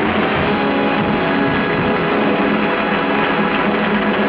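Studio band playing loud, steady closing music at the end of a song.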